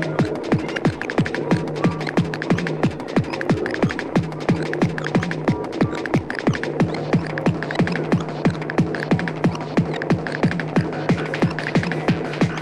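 Fast, hard electronic dance music from a free-party tekno DJ mix: a distorted kick drum nearly three times a second, each hit dropping in pitch, over a steady droning bass note.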